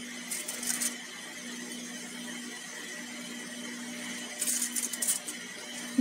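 Aluminium foil crinkling twice, briefly, as bread pizza slices are set down on a foil-lined oven tray, over a steady low hum.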